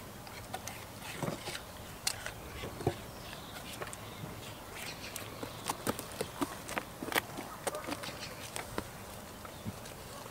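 Goats eating treats from a hand: a run of small, irregular clicks and crunches, coming thickest in the second half.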